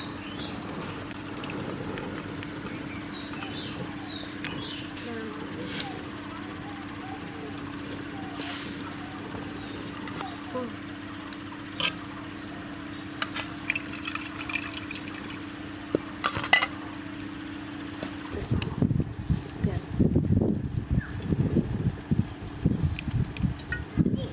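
Outdoor ambience: a steady low hum with small birds chirping and occasional light clicks. About eighteen seconds in, a louder, uneven low rumbling takes over.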